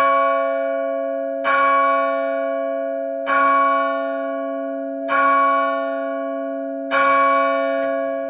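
A single church bell tolling five times at one pitch, a stroke about every two seconds, each left to ring on and fade until the next.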